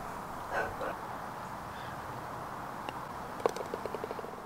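Faint steady outdoor background noise, with a brief faint voice about half a second in and a short run of quick pitched pulses near the end.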